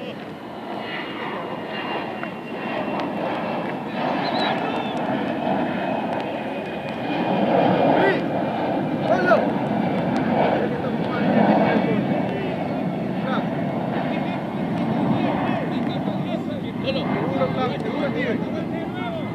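An aircraft passing overhead: a low rushing engine noise that builds, is loudest around the middle, then slowly eases off, with faint distant shouts over it.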